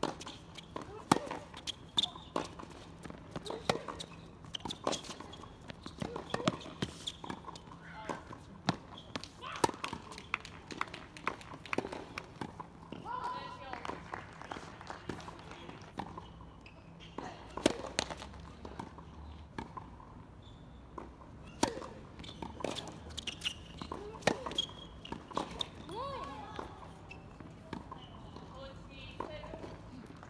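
Tennis ball being struck by rackets and bouncing on a hard court: sharp pops at irregular intervals through a rally and the ball-bouncing before a serve. Voices call out now and then, around the middle and again later on.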